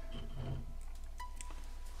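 Quiet room tone with a steady low hum and faint steady tones, broken by a few light taps from a plastic dinosaur figure being set down.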